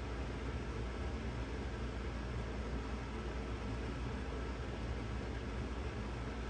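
Steady room noise: an even hiss with a low hum underneath, unchanging throughout.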